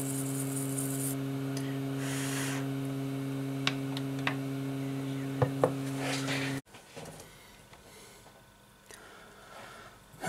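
A steady electrical hum that cuts off suddenly about two-thirds of the way through, with a few light clicks and some brushing while a phone's logic board is cleaned.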